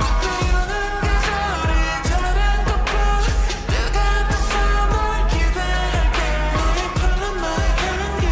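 K-pop girl-group song played slowed down with added reverb: women's singing over a steady beat and deep bass.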